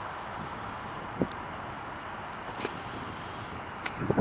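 Distant jet engine noise from a Swiss Airbus A330 rolling down the runway: a steady rumble with wind on the microphone, broken by a few brief faint knocks.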